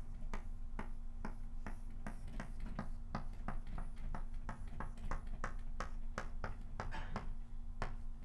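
Chalk tapping on a blackboard in short, quick strokes as a dashed curve is drawn, a steady run of sharp little clicks about three to four a second.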